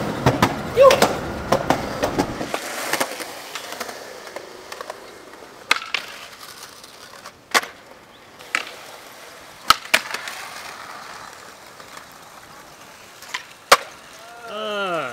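Skateboard on concrete: a rough rumble of rolling wheels that cuts off a couple of seconds in, then about seven sharp, spaced clacks of the board's tail popping and the board landing on flat concrete.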